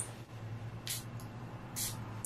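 Coach Dreams perfume bottle's flower-shaped pump sprayer pressed twice, giving two short hisses of mist, one just under a second in and another near the end.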